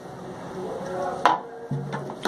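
Faint background music and voices, with one sharp click about a second in.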